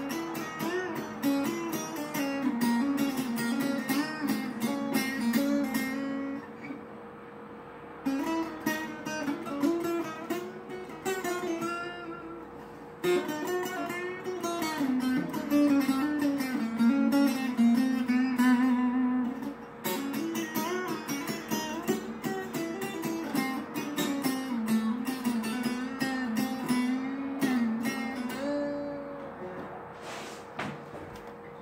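Acoustic guitar played solo, picked notes and strummed chords in melodic phrases, with a brief lull about six seconds in and a few shorter pauses between phrases.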